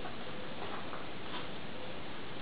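Dogs playing on a sofa, with a few faint, brief dog sounds about half a second to a second and a half in, over a steady hiss.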